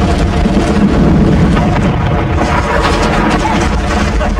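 Giant Dipper wooden roller coaster train running fast along its track: a loud, steady rumble with wind rushing over the microphone.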